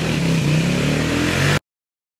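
A small engine running and revving, its pitch rising slightly, cut off abruptly about one and a half seconds in.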